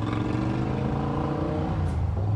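A motor vehicle's engine running close by, a steady low drone with a slight rise in pitch partway through.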